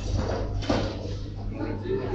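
Customers' voices chattering in a shop over a steady low hum, with a short sharp knock at the start and a louder one less than a second in.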